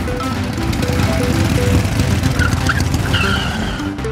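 Motorcycle engine running as the bike pulls up, its tyres skidding to a stop with a brief wavering squeal in the last second and a half, under a background music score.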